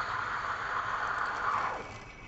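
Espresso machine steam wand texturing milk in a metal pitcher, its tip sunk slightly into the milk to keep the foam thin for a café latte: a steady hiss whose pitch falls and fades out shortly before the end as the steam is shut off.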